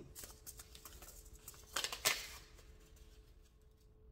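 Paper seed packet being handled and opened: light rustles and clicks, then two brief crinkles about two seconds in. Underneath is a faint steady hum from the hydroponic unit's water pump, which is running.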